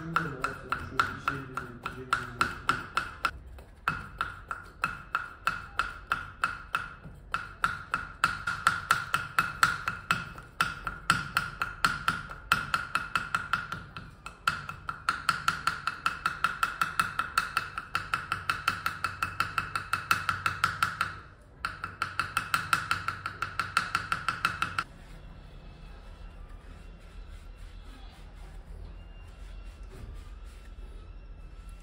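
Valves being lapped into the aluminium cylinder head of a 2013 Honda PCX 125: a valve smeared with lapping paste is worked against its seat, tapping and ringing several times a second. The taps come in runs with short breaks and stop about 25 seconds in.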